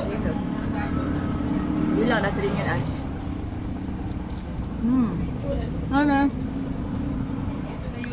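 Steady low hum of motor traffic or a running vehicle engine, with brief voices about two seconds in and again near the five- and six-second marks.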